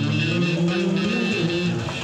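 Amplified street music: a harmonica played into a microphone, holding and bending notes over a plucked string accompaniment.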